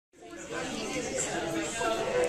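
Many voices chattering at once: a roomful of students talking over one another.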